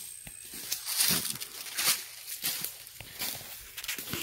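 Footsteps through dry leaf litter, a rustling crunch with each step at a steady walking pace.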